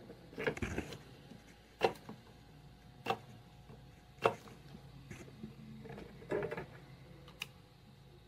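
Handheld spot-welder probes firing on copper strip laid over nickel on a lithium-ion battery pack. There are several sharp snaps a second or more apart, with scrappier handling noise between them.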